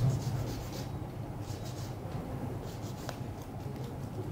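A nail file rasping across a fingernail in three or four short runs of quick strokes, over a steady low hum.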